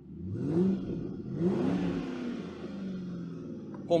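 The 2009 Ford Mustang GT's 4.6-litre 24-valve V8 is revved twice from idle, heard from inside the cabin. The first rev is a short blip. The second climbs higher and falls back slowly to idle.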